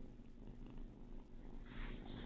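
A kitten purring steadily, a low continuous rumble, with a short scratchy rustle near the end.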